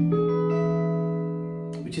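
Electric guitar (Fender Stratocaster) E7 chord, the five chord in the key of A, played as an E-form shape a whole step above the D7, ringing out and slowly fading, with a few upper notes sounding just after the first strike.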